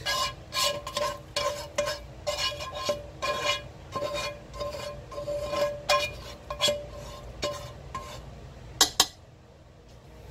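A utensil scraping softened onions out of a nonstick skillet into a slow cooker crock, in repeated uneven strokes, with the pan ringing at each one. Two sharp knocks come a little before the end, then it goes quiet.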